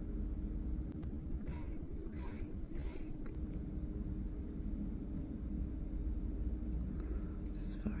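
Steady low background rumble, with a few faint short sounds in the first three seconds.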